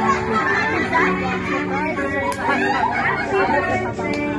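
Several people talking at once in a lively group chatter, voices overlapping, with music faintly underneath.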